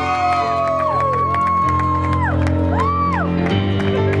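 Music with a steady bass line plays while guests cheer and let out long whoops, with scattered hand claps.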